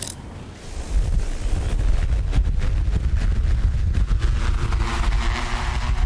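Freefly Alta 8 octocopter spinning up and lifting off close to the microphone: propeller hum over a heavy low rumble of rotor downwash buffeting the microphone, starting about a second in.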